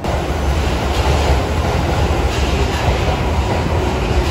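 Red Tokyo Metro Marunouchi Line subway train running along the platform behind the screen doors: a loud, steady rumble of wheels and motors.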